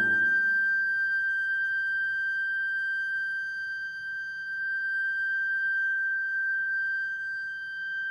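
A concert flute holds one long, high note with a steady pitch. The piano's last chord dies away in the first second, leaving the flute sounding alone.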